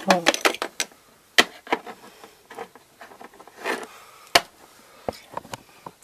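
Scattered clicks and taps of small plastic toy pieces being handled against a plastic dollhouse, with two sharper knocks, one about a second and a half in and one near two-thirds of the way through, and a short rustle between them.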